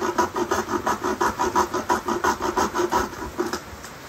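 Hand sawing through softwood with a cheap frame saw, its thin blade under tension: quick, even rasping strokes, about five or six a second, that stop about three and a half seconds in. The blade has too much play in it, so the cut wanders.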